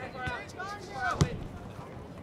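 A soccer ball kicked once with a sharp thud a little past one second in, over distant shouting voices from the field.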